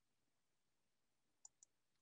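Near silence with two faint computer mouse clicks in quick succession, about one and a half seconds in.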